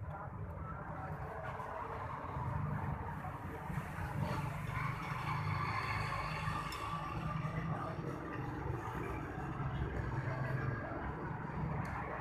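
Steady low rumble of a running vehicle engine.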